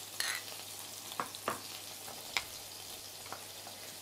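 A metal spoon stirring a thick sauce in a small bowl, clicking against the bowl a few separate times, over the steady sizzle of burger patties frying in a pan.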